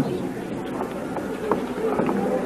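A steady low electrical buzz under a faint murmur of room noise, with a couple of small knocks about a second and a half in.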